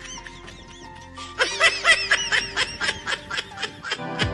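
Background music with a high-pitched laughter sound effect: a rapid run of giggling bursts starts about a second and a half in and runs nearly to the end.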